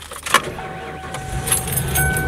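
Ford-chassis Class C motorhome's engine idling just after being started with the ignition key: a steady low rumble with a thin steady whine over it, and the keys jangling on their ring.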